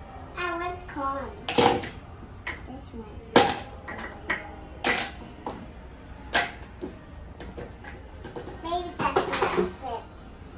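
Hollow plastic toy fruit clacking against a plastic pitcher and countertop in a string of sharp knocks, the loudest about three and a half seconds in. A small child's voice is heard briefly near the start and again near the end.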